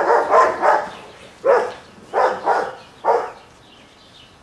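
A dog barking: a quick run of barks, then a few single barks spaced about half a second to a second apart, stopping a little after three seconds in.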